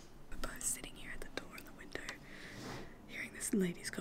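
A woman whispering close to the microphone, with a couple of voiced syllables near the end.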